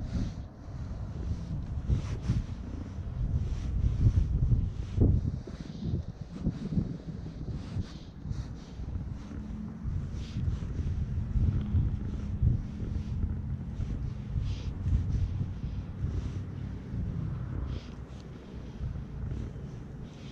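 Wind buffeting the microphone: a gusty low rumble that swells and eases, with a few faint clicks.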